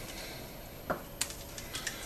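Light clicking and rustling of staghorn sumac berries and stalks being broken apart by hand over a colander, with a few sharp clicks in the second half.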